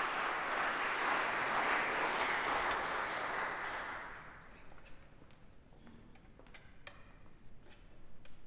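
Audience applauding, the clapping fading out about four seconds in, followed by scattered light clicks and taps.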